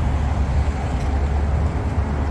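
Steady low rumble of outdoor city background noise, with no distinct events.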